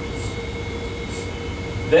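Steady low rumble with a constant faint hum under it: background machinery and ventilation noise in a lecture room aboard a cruise ship.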